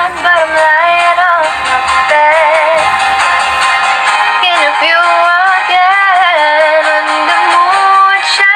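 A song with a female voice singing long, held notes with a wavering vibrato over a light backing track. No words can be made out.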